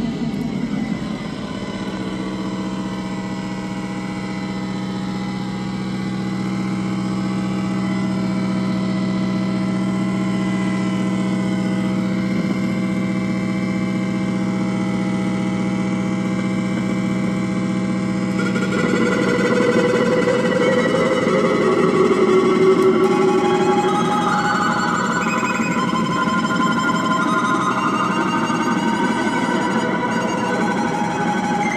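Live experimental electronic noise music from a rig of toy instruments and an effects pedal: a steady low drone with many overtones, joined about two-thirds of the way through by shifting higher electronic tones that step from pitch to pitch.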